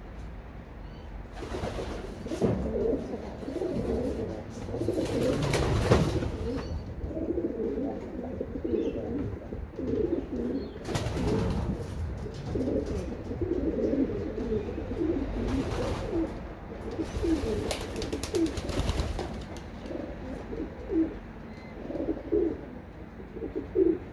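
Racing pigeons cooing, many short low calls one after another, with a few brief louder rushes of noise over them, the loudest about six seconds in.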